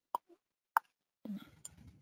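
Two sharp computer mouse clicks, about two-thirds of a second apart, followed in the second half by an uneven, low rumbling noise.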